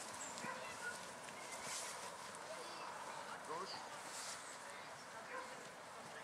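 Faint outdoor background of distant voices, with a dog barking now and then in the distance.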